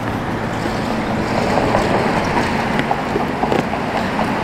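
Steady outdoor noise of wind on the microphone and traffic, with light crackles and clicks from a cardboard box being handled.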